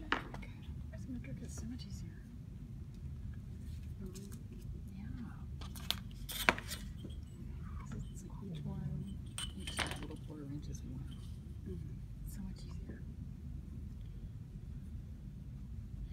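A few sharp clicks and taps of a pencil and a metal ruler being handled on a cutting mat while binder's board is measured and marked, the loudest about six and a half seconds in, over low room hum.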